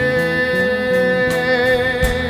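Live band music: one long note held steady, wavering slightly near the end, over acoustic guitar and bass.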